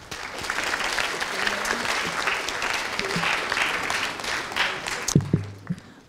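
Audience of students clapping: applause that swells right away, holds for about five seconds and dies away, with a couple of low thumps as it ends.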